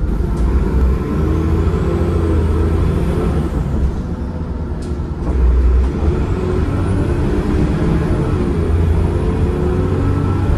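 Cummins ISCe 8.3-litre diesel engine and 5-speed ZF Ecomat gearbox of a Transbus ALX400 Trident bus running under way, heard inside the passenger saloon, with a faint gearbox whine rising in pitch. The engine note eases off about four seconds in, then comes back strongly about a second later.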